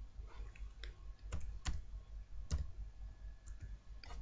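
Computer keyboard being typed on: a few sharp, irregularly spaced key clicks as a short word is entered.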